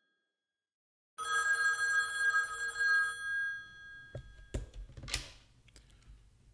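Retro desk telephone's bell ringing: one ring of about two seconds after a silent pause, fading out, then a few knocks and a rustle as the handset is picked up.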